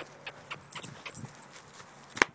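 Horse moving on dirt close by: a scattering of light, irregular hoof clicks and knocks, with one duller thump about a second in.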